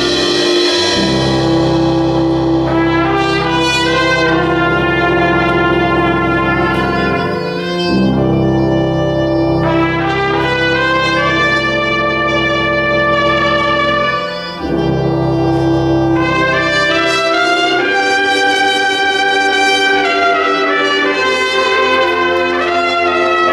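Solo trumpet playing a melody of long held notes over a concert band's sustained brass and reed chords. The phrases are split by two short breaks, and the low accompaniment thins out near the end.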